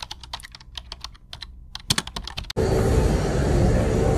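A rapid, irregular run of keyboard-typing clicks, a sound effect for an on-screen title, lasting about two and a half seconds. It cuts off suddenly into the loud, steady running noise of a stair-climber machine.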